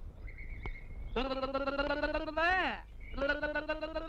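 A person's voice calling out in long, drawn-out cries, twice. Each cry is held at one pitch and ends with a quick rise and fall.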